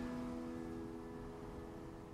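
Slow, soft instrumental relaxation music: a held piano chord slowly dying away.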